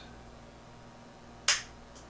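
A single sharp click about one and a half seconds in: the Drake L-4B linear amplifier's front-panel power switch being flipped on.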